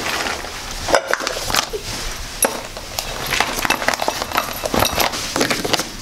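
Small hotel items (toiletry bottles, a drinking glass, soap) being picked up and put into a fabric bag: a run of irregular light clinks, knocks and rustles.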